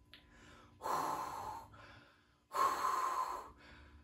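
A person taking two deep breaths, each about a second long, sounding like Darth Vader.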